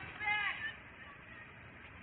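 A short, faint shout from a voice at a distance in the first half-second, with no words picked up, then only faint steady background hiss.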